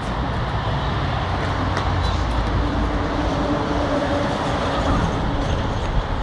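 Steady rumble of running machinery, with a faint low hum that comes in about two seconds in and fades near the end.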